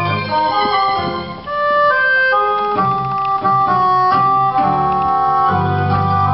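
Live instrumental introduction to a slow song: a melody of held notes moving step by step, with sustained chords and low bass notes that come and go.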